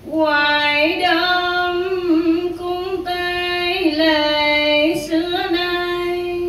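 A woman chanting a Buddhist verse in a slow, drawn-out sung melody, holding long notes with small turns between them.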